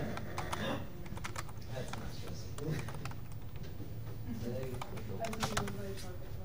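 Typing on a computer keyboard: clusters of quick key clicks near the start, around two seconds in, and again near the end.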